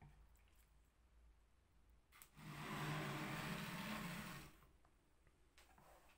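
A wet whetstone rubbing and scraping as it is settled into its wooden holder: one steady scrape of about two seconds, starting a little past two seconds in.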